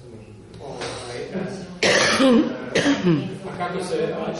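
A person coughing, two sudden loud coughs about two and three seconds in.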